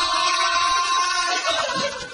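Young men's voices holding one long, loud shouted note for about a second and a half, which then breaks up into looser vocal sounds.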